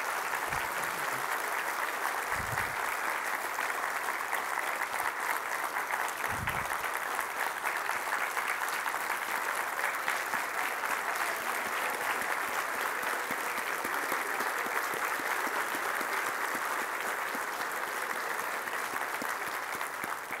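A congregation applauding: a steady, sustained round of clapping from many hands, with a few short low thumps in the first seven seconds.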